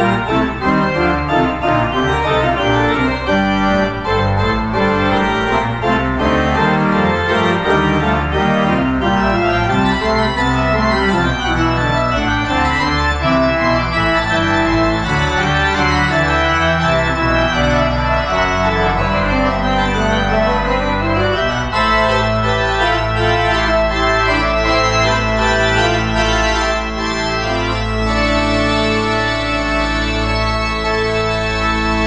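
Church organ playing a loud, busy passage on manuals and pedals with many quickly moving notes. About 22 seconds in it settles onto sustained chords over a held low pedal bass.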